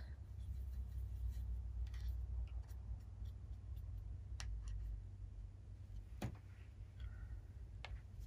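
Quiet handling of paint supplies at a craft table: a few light clicks and taps with faint rustling, over a low steady hum.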